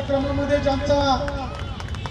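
A voice speaking for about the first second and a half over a steady low rumble, followed by a few light clicks.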